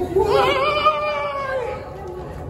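One long, high-pitched, voice-like call lasting about a second and a half. It wavers at the start, holds its pitch, then drops a little just before it stops.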